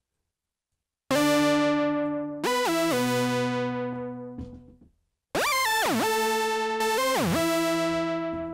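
A Reaktor Monark analog-style monosynth patch, with bass and lead oscillators layered two octaves apart and driven through its Load saturation, plays two short phrases: one starts about a second in, the other about five seconds in. The pitch glides between notes (portamento) and each note rings out and fades. The tone is bright and buzzy, and super loud even with the fader almost all the way down.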